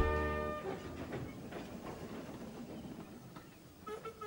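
A few musical notes end about half a second in. Then a small locomotive rattles along the track, a grainy clatter that slowly fades.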